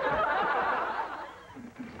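Studio audience laughter, many voices at once, dying away about a second in.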